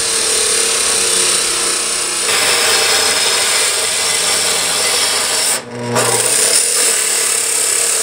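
Abrasive chop saw cutting through steel, a steady grinding whine with a shower of sparks. It breaks off briefly a little past halfway, then resumes.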